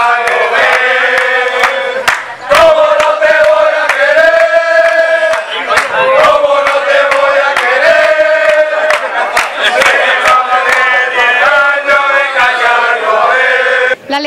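A group of men singing a chant together in unison, loud, with long held notes.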